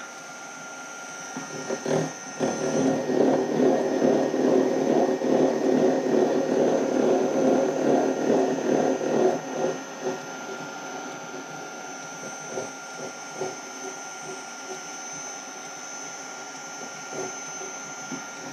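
Milling machine with a gear cutter taking a pass through a gear blank held in a dividing head. There is a loud, rough, chattering cutting noise from about two seconds in, which stops near ten seconds. Then only the machine's steady whine and a few light clicks remain.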